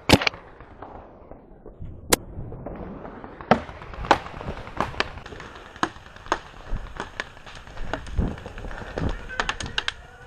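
Paintball markers firing: single sharp pops at uneven gaps, the loudest in the first half, then a quick run of fainter shots near the end.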